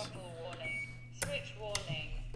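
FrSky Horus X10 radio transmitter starting up with a throttle warning: a short high beep from its speaker about two-thirds of a second in, then a sharp click a little after a second, most likely a key pressed to skip the warning.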